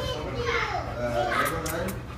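Indistinct background voices, children's among them, over a steady low hum.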